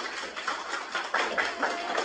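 A group of students clapping, a dense run of quick, uneven claps, with a few voices among them.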